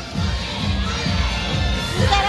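Parade crowd cheering, with children shouting, over parade music with a low beat.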